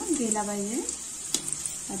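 Chopped green chillies frying in hot oil in a kadhai, a steady sizzle, as a metal slotted spoon stirs them; one sharp click partway through.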